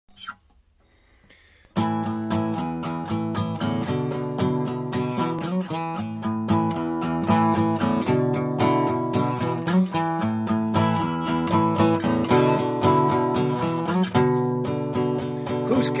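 Acoustic guitar playing a song's intro, strummed and picked in a steady rhythm, starting suddenly about two seconds in. A man's singing voice comes in right at the end.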